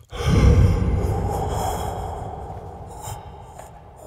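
A man's long, loud, stunned gasp of breath blown close into a handheld microphone. It starts abruptly and trails off slowly over about three seconds.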